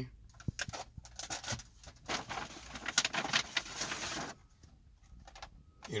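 Cardboard-and-clear-plastic candy boxes being handled and swapped: a run of clicks and knocks, then about two seconds of dense crinkling and rattling, then a few more light clicks.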